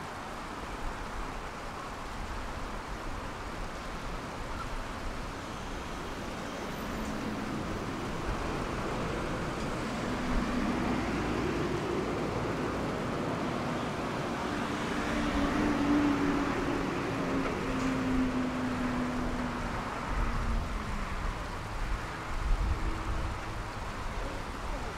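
City traffic noise from nearby roads, a steady rumbling hiss. Through the middle a passing vehicle's engine hum swells and then fades.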